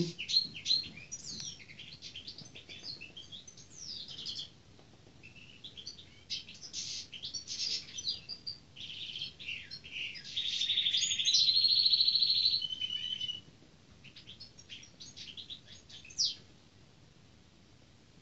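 European goldfinch singing: a long run of quick, varied twittering notes, with a long buzzy trill in the middle that is the loudest part of the song.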